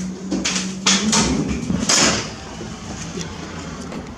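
A building's entrance door being opened and passed through, with a few sharp clacks of its hardware and latch. A steady low hum stops about a second in, and quieter outdoor background follows.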